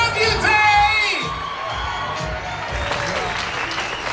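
Party music over a PA with a man's voice shouting and singing into a microphone. The music and voice drop away about a second in, leaving quieter crowd noise and some clapping.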